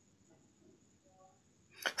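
Near silence: a pause between two speakers, broken near the end by a short vocal sound as a man starts to speak.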